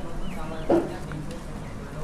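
A short animal call about two-thirds of a second in, preceded by a faint brief chirp, over steady low background noise.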